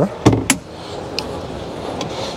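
Two sharp knocks about a quarter second apart from a fiberglass storage hatch lid and its push-button latch on a center-console boat being handled, then a faint tick over steady background hall noise.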